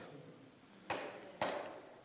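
Two faint, short clicks about half a second apart, each trailing off briefly, over low room tone.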